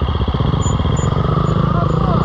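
KTM EXC 300 two-stroke enduro bike engine idling steadily, its rapid, even firing pulses running without revs.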